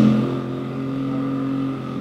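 A man's drawn-out hesitation hum, a held 'mmm' on one low, unchanging pitch lasting nearly two seconds, fading out near the end. It is the sound of him searching his memory for the lyric.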